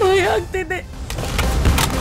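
A voice cries out with a quavering, wavering pitch for under a second. It is followed by a few sharp swishing sound effects near the end.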